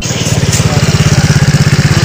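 A motorcycle engine idling close to the microphone, with a steady, fast, even beat.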